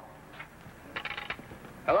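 A short rattle of quick clicks about a second in, from the telephone being handled.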